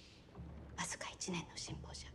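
A woman speaking a short line in a hushed whisper over a low steady hum.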